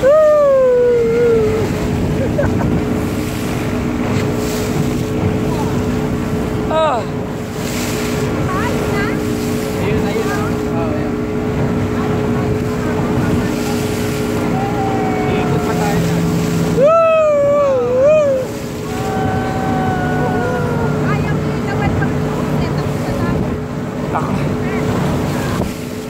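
Towing motorboat's engine running steadily under a rush of wind and water spray on the phone's microphone, with a few shouts from the riders.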